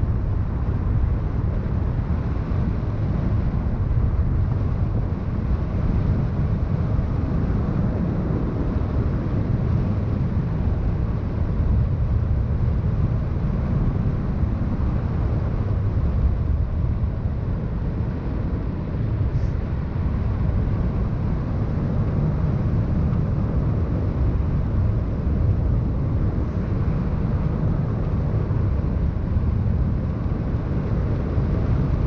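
Wind rushing over the camera microphone during a paraglider flight: a steady low rumble that holds at one level throughout.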